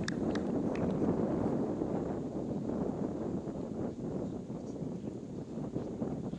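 Steady wind noise on the microphone over open-air ambience, with a few faint short high clicks in the first second.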